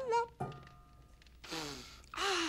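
A voice trails off at the start, then a single sharp knock about half a second in, over soft background music with held notes.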